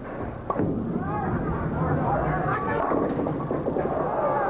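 A bowling ball lands on the lane with a sharp knock about half a second in, then rolls down the wooden lane with a steady low rumble under the voices of the arena crowd.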